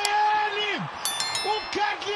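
A singing voice holds a long, level note that falls away at its end, followed by shorter sung notes. About a second in there is a brief, bright chiming ring.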